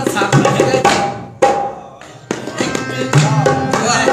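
Live ghazal accompaniment: tabla strokes over a sustained melodic instrument. The music falls away briefly about a second and a half in, then comes back sharply just after two seconds.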